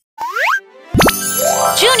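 A quick upward-gliding cartoon sound effect, then a sharp hit about a second in as bright children's theme music starts. A child's voice begins calling out near the end.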